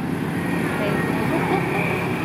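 Steady road traffic noise from passing cars and motorbikes, with faint voices in the background.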